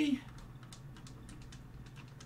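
Typing on a computer keyboard: a run of light, irregular key clicks.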